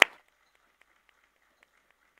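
A single sharp clap at the very start, the last of a quick run of claps about four a second, then near silence with a few faint ticks.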